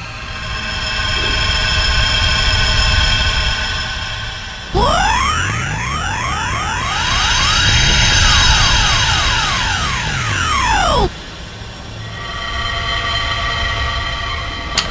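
Synthesizer film score with sustained tones. About five seconds in, a loud electronic sound effect starts suddenly: many pitches sweep up and down against each other. It cuts off abruptly about six seconds later, and the sustained tones return.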